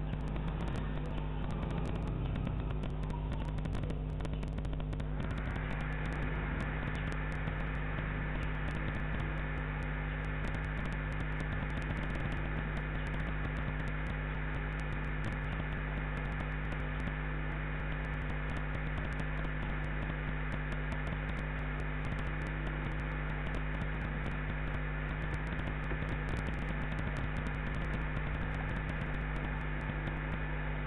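Steady electrical hum under a hiss of background noise. A faint, steady high tone joins about five seconds in.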